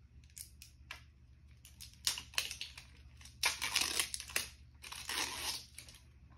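Plastic wrapping of a small mystery fidget toy being torn open and crinkled by hand, in a series of short ripping bursts that grow longer and louder through the middle.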